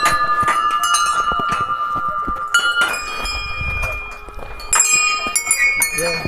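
Brass temple bells, hung in a row on a railing, struck by hand one after another as a pilgrim passes. Each strike rings on with a clear, sustained tone, and the tones overlap at several pitches. A second run of strikes comes in the last second or so.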